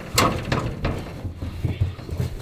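A struggling donkey's hooves knocking and thumping against a livestock trailer: a loud sharp knock about a fraction of a second in, then several more knocks and heavy thumps.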